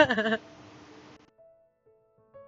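A woman's short, bright laugh that breaks off under half a second in, followed about halfway through by faint soft piano notes starting.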